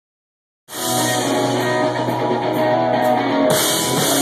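Live rock band playing, with electric guitar and drum kit. The sound starts abruptly just under a second in, and the cymbals and high end fill out about three and a half seconds in.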